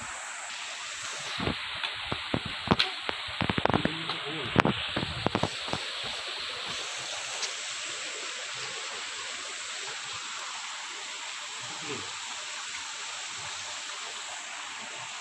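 Steady rush of a small rocky stream, with a cluster of sharp clicks and knocks in the first few seconds.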